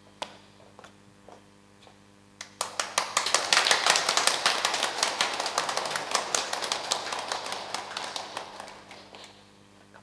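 Congregation applauding: a few scattered claps, then applause breaking out about two and a half seconds in, at its fullest around four seconds and dying away near the end.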